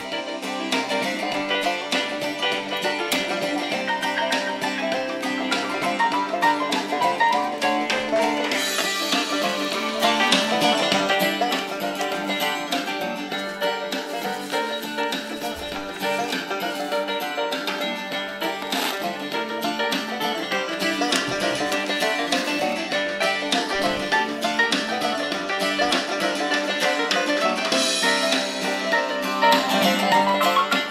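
Music received on FM and played through the small built-in speaker of a Tiemahun FS-086 emergency radio; it sounds thin, with almost no bass.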